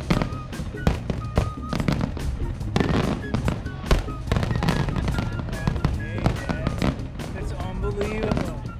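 Fireworks display: aerial shells bursting in quick, irregular succession, with many sharp bangs and crackles.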